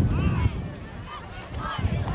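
A run of short honking calls that rise and fall in pitch, several overlapping one another. Low rumble, typical of wind on the microphone, is heavy for the first half-second and then eases off.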